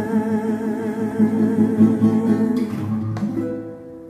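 Closing bars of an acoustic folk song: an acoustic guitar played under a woman's long held sung note with vibrato. The voice stops about three seconds in and the guitar's last chord rings on, fading away.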